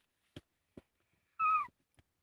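A domestic cat meowing once: a short call that falls in pitch at its end, about one and a half seconds in.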